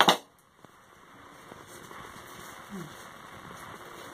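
Steel scissors snip once through crepe paper right at the start, followed by a soft, steady rustle of crepe paper being handled and crumpled in the hands.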